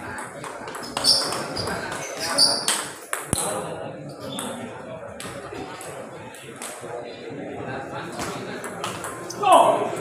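Table tennis rally: the ball clicking sharply off the paddles and the table several times in quick succession over the first few seconds, over a murmur of voices. A loud shout comes near the end.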